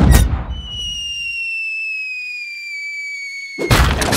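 Cartoon cannon-fire sound effects: the tail of the cannon's boom dies away, then a long whistle falls slowly in pitch as the cannonball flies. Near the end a loud crash cuts the whistle off as the cannonball lands.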